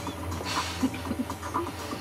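Faint shuffling and scraping of a body squeezing through a tight opening in a boat's compartment, over a steady low hum.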